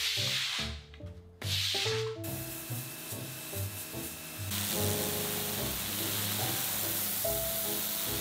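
Steam cleaner nozzle hissing as it blasts tile grout, in two short bursts and then steadily from about halfway, over background music.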